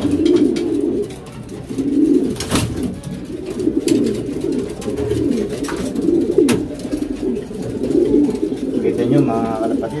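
Domestic pigeons cooing continuously, many calls overlapping in a low, wavering chorus. Two sharp clicks cut through it, one about two and a half seconds in and one about six and a half seconds in.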